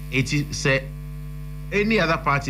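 Steady electrical mains hum, a low buzz with a row of evenly spaced overtones, running under the broadcast audio. Brief snatches of speech sit on top of it near the start and again at the end.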